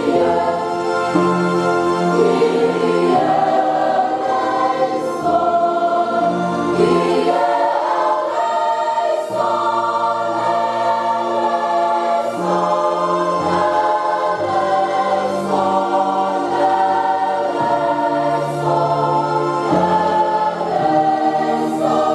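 A choir singing a hymn, accompanied by a Yamaha electronic keyboard playing sustained chords over a bass line that steps every couple of seconds.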